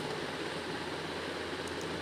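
Steady background hiss and low hum, with two faint light scrapes near the end from a peeler taking the skin off a firm raw green mango.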